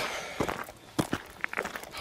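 Footsteps of a person walking on a dry, gravelly dirt track: several crunching steps in quick succession.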